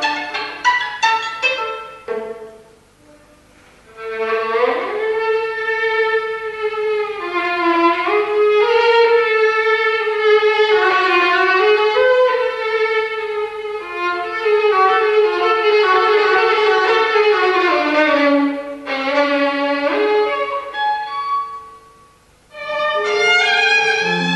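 Solo violin playing: a few short detached notes, a pause of about a second and a half, then a long, slow bowed melody with audible slides between notes, broken by a short pause near the end before the playing starts again.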